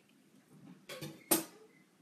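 Kitchen knife knocking on a cutting board: a soft knock about a second in, then a sharper, louder one just after.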